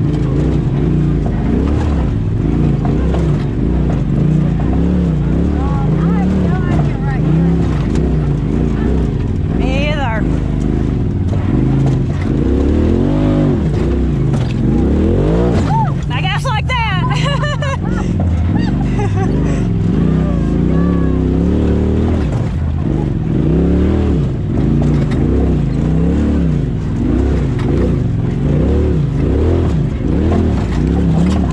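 Side-by-side UTV engine working at low speed over rocks, its pitch rising and falling in quick swells as the throttle is worked on and off.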